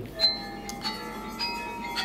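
A short musical sting of bell-like chime notes, entering one after another and held.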